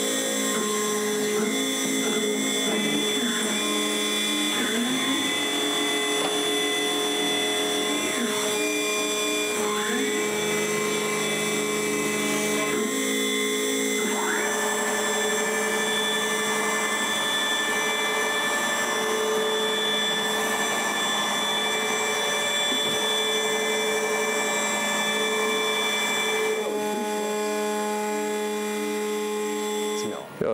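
CNC router milling a sintered-plastic ski base: a steady machine whine, with the pitch dipping and rising several times in the first dozen seconds as the cutter moves. The sound changes about halfway through.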